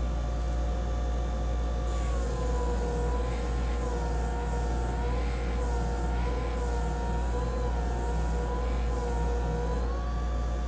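Electric leather edge-burnishing machine running with a steady hum and whine. About two seconds in, a waxed leather edge is pressed into the spinning grooved burnishing wheel, adding a rubbing hiss while the motor's whine drops and wavers under the load; near the end the leather comes away and the whine settles back to its steady pitch.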